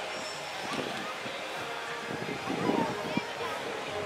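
Indistinct chatter of people walking by in an outdoor crowd, no single voice standing out, with a brief louder swell of voices and a short sharp tick about three seconds in.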